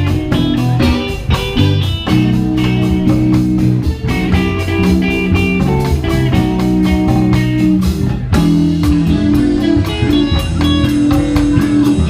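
Live band playing with electric guitars, bass guitar and drum kit over a steady beat.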